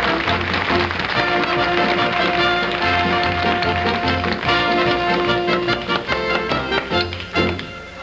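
Hammer driving nails into a wooden board in rhythm, the strikes keeping time with band music. The playing drops away briefly near the end.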